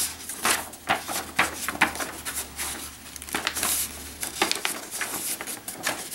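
Sheets of white paper rustling and crinkling as they are handled and folded, a run of irregular crisp crackles.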